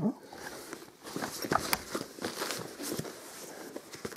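Hands handling a padded, insulated fabric carrying bag: fabric rustling with a few light clicks and taps as the lid is folded down and the bag is laid flat.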